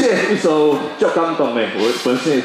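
A man talking into a microphone, his voice amplified through a stage PA system.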